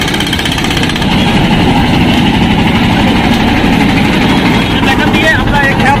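An engine running steadily, with voices in the background.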